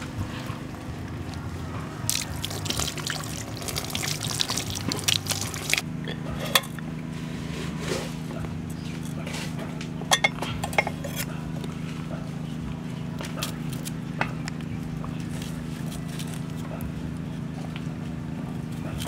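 Water trickling and splashing for the first few seconds while raw chicken is handled, then a few sharp clicks and knocks from handling vegetables and utensils, all over a steady low hum.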